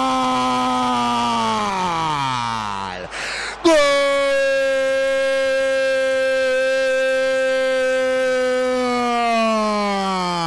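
Radio football commentator's drawn-out goal cry for an equaliser. It is one long held shout that sinks in pitch and breaks off about three seconds in, then after a quick breath a second, even longer held shout that also sinks away near the end.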